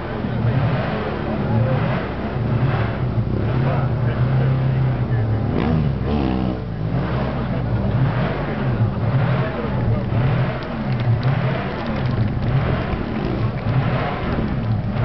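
Stunt motorcycle engine revving in repeated surges about once a second as the rider works the throttle through wheelies, with one long dip and rise in pitch about six seconds in.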